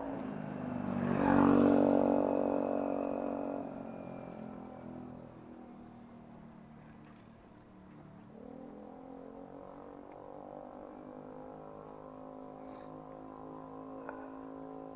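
A motor vehicle's engine hum that swells to its loudest about a second and a half in, then fades over the next few seconds and carries on more faintly.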